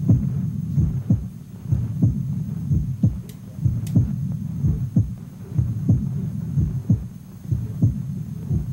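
Cartoon heartbeat sound effect, as if heard through a stethoscope: low thumps in a steady beat, about two a second, over a low hum.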